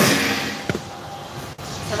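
Bubble craps machine blowing its dice around inside the clear dome: a sudden rush of air at the start that dies away over about a second, with a single sharp click about two-thirds of a second in.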